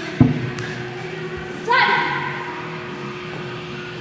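A single sharp thud just after the start, the loudest thing heard, then a brief voice sound a little under two seconds in, over a steady faint hum in a large room.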